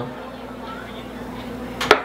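A steady room background with a faint low hum, then one sharp knock just before the end.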